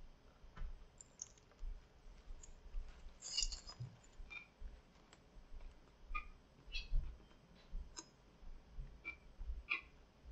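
Faint chewing of a mouthful of steak and bacon grilled cheese sandwich: scattered soft wet mouth clicks and smacks, a few every second.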